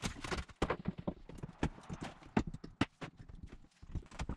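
Rapid, irregular wooden knocks and clatter as old subfloor boards are pried up with a steel flat bar and handled.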